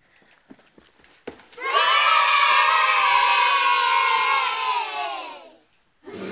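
A child's long, loud held scream, beginning about one and a half seconds in after a faint knock, lasting about four seconds and sinking slightly in pitch as it fades.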